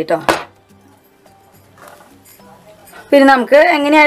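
A single sharp metal clank, as a metal cake tin is set down on the perforated stand inside a larger pot, then a quiet pause before a woman's voice resumes talking about three seconds in.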